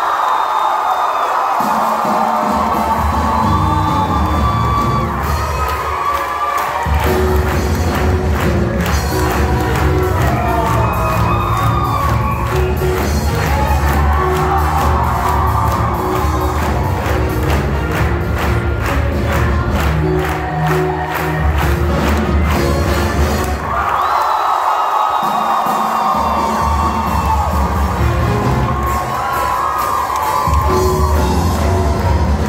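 Women's show choir performance with a live band, the audience cheering and shouting over the music.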